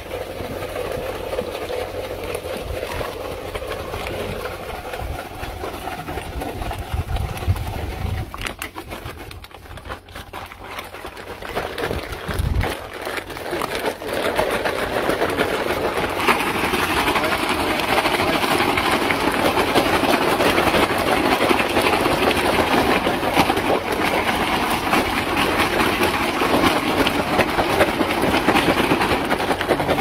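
Water running from the tap of a water tank into a plastic bag, over a steady low engine-like hum. About halfway through, a louder steady rushing noise takes over.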